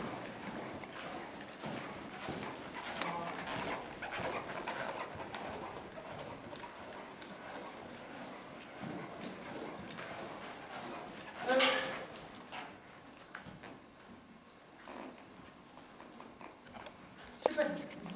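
A horse moving loose on the soft dirt of an indoor arena, with soft vocal sounds from the handler. A faint high chirp repeats about once a second throughout, and a short louder vocal sound comes a little before the middle.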